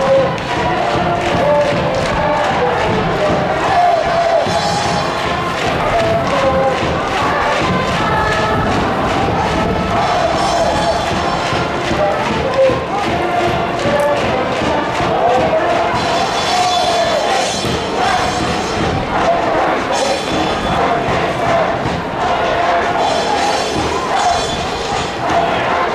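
University cheering section singing a cheer song in unison, backed by a brass band and a steady drum beat.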